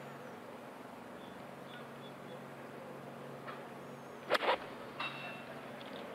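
A golf club striking the ball: one sharp crack about four seconds in, over quiet outdoor ambience with faint bird chirps.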